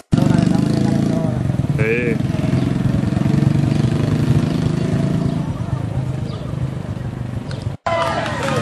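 Motorcycle engine running loudly and steadily close by, with people's voices and a brief high wavering call about two seconds in. The sound breaks off suddenly near the end.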